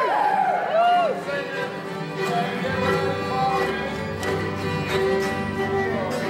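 Acoustic bluegrass jam ensemble of fiddles, guitars, banjo, mandolin and mountain dulcimer starting a tune together: fiddle notes lead, and fuller guitar strumming comes in about two and a half seconds in.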